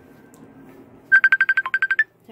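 Phone ringtone for an incoming call: a fast run of about a dozen short high beeps, starting about a second in, with one lower note midway.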